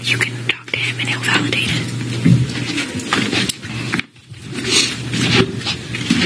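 Hushed, whispered conversation between people close to the microphone, over a steady low hum.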